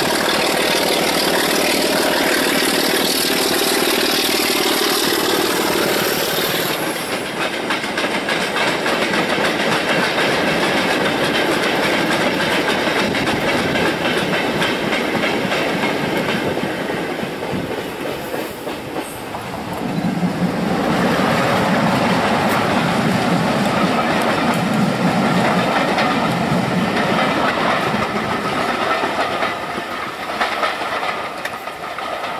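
A diesel locomotive hauling a train of freight wagons passes close by with its engine running. About six seconds in, its engine note gives way to the clatter of the wagons over the rail joints. About twenty seconds in, a second diesel-hauled train of coaches passes, loud again.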